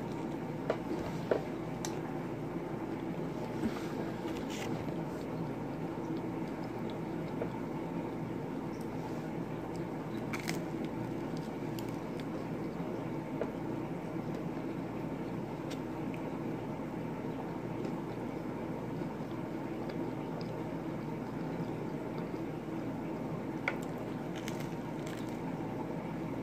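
A person biting into and chewing a slice of frozen party pizza, with a few faint crunches and mouth clicks, most of them in the first few seconds, over a steady background hum.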